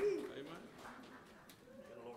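A sharp click, then a brief low murmured voice sound lasting about half a second, then faint room sound.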